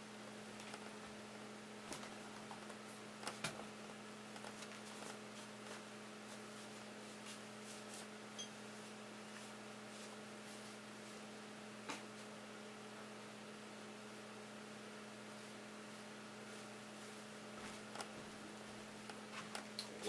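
Faint, steady electrical hum in a small room, with a few soft knocks and clicks now and then.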